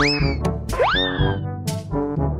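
Two quick rising cartoon-style whistle glides about a second apart, each sweeping up steeply and then sagging slightly, over background music. It is a comic editing sound effect marking a slip.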